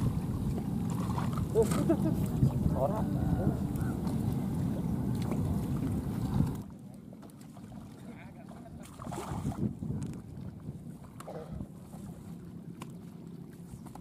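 Wind buffeting the microphone as a low rumble, with faint voices in the background; about six and a half seconds in it cuts off abruptly to a much quieter outdoor background with scattered distant chatter.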